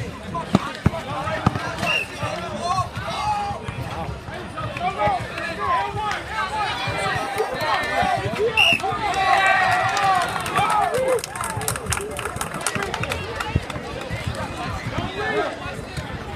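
Crowd of spectators at a basketball game talking and shouting over one another, swelling louder around the middle, with a few sharp knocks mixed in.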